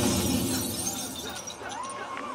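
Sound effect of a mirror shattering, played over a marching band's field speakers: a crash of breaking glass that dies away over about a second and a half.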